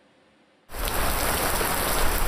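Heavy rain falling on wet, muddy ground: a dense, steady patter that cuts in suddenly a little under a second in, after near silence.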